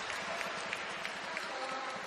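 Badminton hall spectators and players on the team bench applauding a won rally: many hands clapping at once over a crowd murmur, thinning toward the end.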